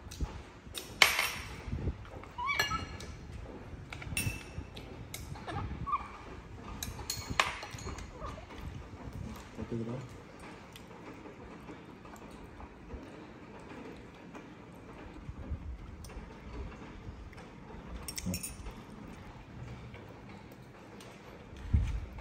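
Metal spoon and chopsticks clinking against ceramic bowls, in scattered sharp clicks. A few short, high, rising squeaks from a baby monkey in the first several seconds.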